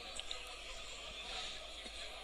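Faint, steady ambience of a football match in a sparsely filled stadium, with a few faint short sounds.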